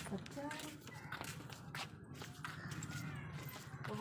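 Footsteps of several people walking on a brick-paved lane, sandals and shoes clicking irregularly, with faint voices in the background.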